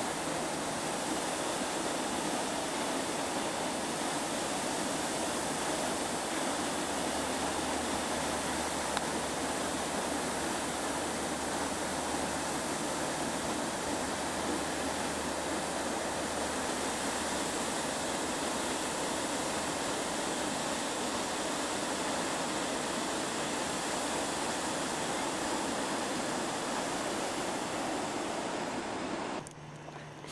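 Steady rush of turbulent white water churning in the pool below a dam, cutting off suddenly near the end.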